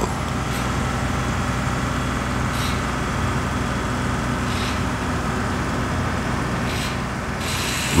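A steady low mechanical rumble, like a heavy engine or machinery running, with a few faint brief hisses over it.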